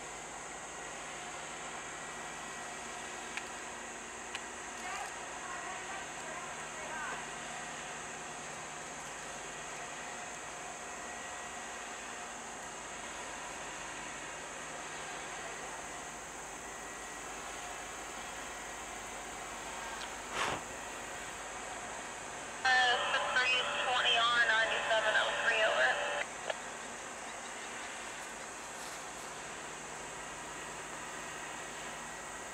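A steady hiss with a distant freight train rolling slowly. About 23 seconds in, a scanner radio transmission breaks in: a garbled voice that switches on and off abruptly and lasts about three seconds. A fainter, shorter burst of radio voice comes earlier, about five seconds in.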